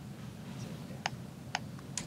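Three sharp keystroke clicks from typing on a laptop keyboard, about half a second apart, over a steady low room hum.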